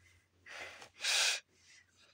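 A person sighing: a soft breath, then a louder, sharper one about a second in.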